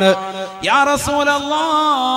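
A man's voice in a drawn-out, chant-like sermon delivery: a held note that breaks off about half a second in, then a rising glide into another long held note.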